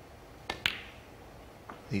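Snooker cue tip striking the cue ball, followed a split second later by a sharp, ringing click of the cue ball hitting a red, then a faint knock of a ball about a second later.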